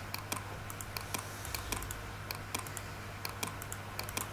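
Quick, irregular clicking of computer keys and buttons, about three to four clicks a second, as numbers are entered into a calculator, over a steady low hum.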